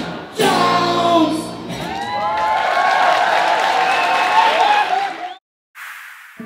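Live rock band playing an acoustic set, with many crowd voices singing and cheering over it. The sound cuts off abruptly a little after five seconds in, and a soft synth jingle begins just before the end.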